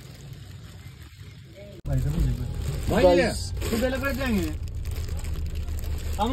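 A steady low rumble starts abruptly about two seconds in, with a person's voice rising and falling over it twice.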